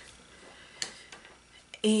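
Three faint light clicks of a small plastic bottle of Un-du adhesive remover and its scraper being handled over the planner pages, the last just before a woman says a short word.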